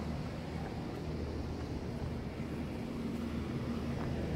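A steady low hum with a wash of noise: outdoor background ambience, mechanical in character.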